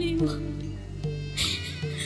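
Stage music with steady low notes, and a high, wavering wailing voice over it, typical of a woman weeping aloud. The wailing comes briefly at the start and again in the second half.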